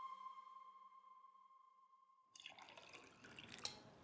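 A held background-music tone fades away, then, a little past halfway, water is poured from a glass jug into a drinking glass, faint and splashy, with a small click near the end.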